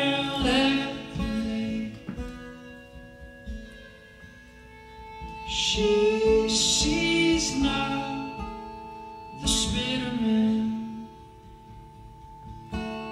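Folk band playing live: a sung melody over acoustic and electric guitar, in three phrases with held chords between them.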